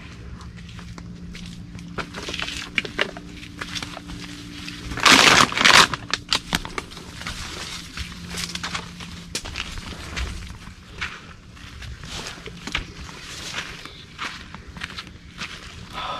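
Footsteps and scuffs of a person scrambling up rock boulders through brush, with scattered clicks and knocks of shoes and hands on stone. There is a loud burst of noise about five seconds in, and a faint steady low hum under the first half.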